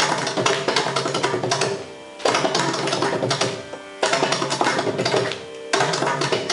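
Mridangam playing a fast thani avartanam (percussion solo) of dense, rapid strokes. The playing breaks off briefly three times, about two, four and five and a half seconds in, and a steady drone is heard beneath during those gaps.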